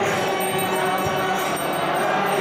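Temple devotional music during arati: a steady, dense wash of ringing bells and hand cymbals over group chanting.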